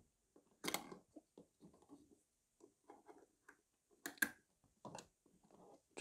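Faint scattered clicks and light knocks from a small tabletop tripod and camera being handled and turned on a desk, the two clearest a little under a second in and about four seconds in.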